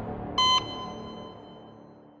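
One short electronic beep about half a second in, over the fading tail of the film score.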